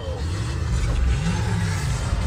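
Action-film soundtrack played on a car stereo: a car engine revving up in rising pitch over a deep rumble.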